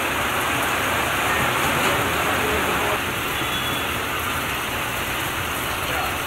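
Heavy rain pouring down on a street: a steady hiss of rainfall, a little louder in the first half.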